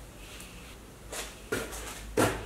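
Brief handling noises: a short rustle about a second in, then a sharp knock followed by a few quick clicks near the end.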